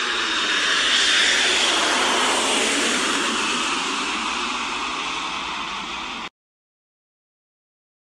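Jet airliner engine noise as a plane comes in to land: a steady rushing jet sound, loudest about a second in and slowly fading, that cuts off abruptly a little over six seconds in.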